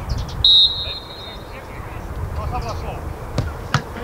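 Referee's whistle giving one short, shrill blast about half a second in. Faint distant shouting follows, then two sharp knocks near the end.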